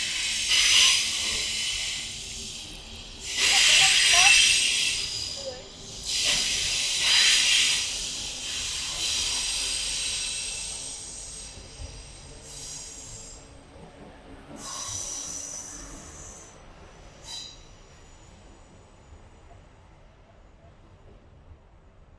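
Train passing: a loud hiss with faint high squealing tones. It comes in three surges about three seconds apart, then fades away, with a short sharp click as it dies down.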